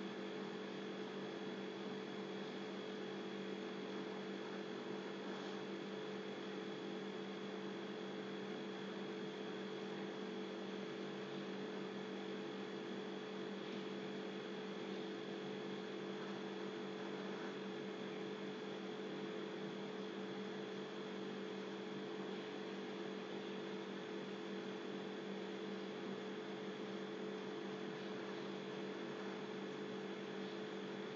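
Steady electrical hum, several fixed tones with a hiss beneath.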